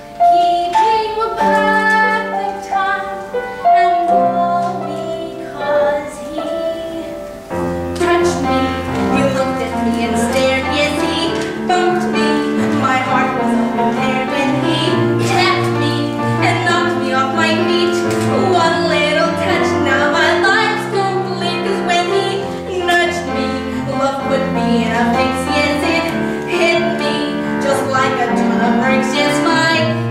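A woman singing a musical-theatre song live, with piano accompaniment. About seven seconds in, the accompaniment fills out with a deeper bass and the song moves on more steadily.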